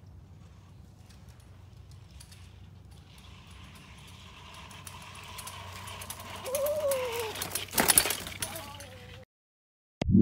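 Mountain bike coming down a dirt trail strewn with dry leaves, its tyres crunching and rattling louder as it approaches. A sharp clatter of the bike comes about eight seconds in. The sound cuts off about a second before the end.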